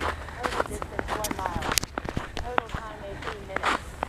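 Footsteps crunching on a thin layer of snow over a walking path, as a series of sharp, irregular crunches, with a steady low rumble beneath.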